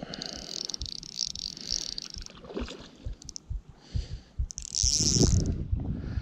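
Fishing reel whirring in two spells, about two seconds at the start and a second near the end, while a heavy fish is being played. Irregular knocks and bumps of handling run throughout.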